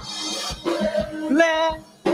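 A solo voice singing over musical accompaniment with a steady low beat.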